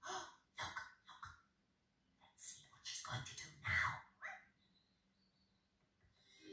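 Short, wordless vocal sounds from characters on a television programme, in brief bursts that stop about two-thirds of the way through.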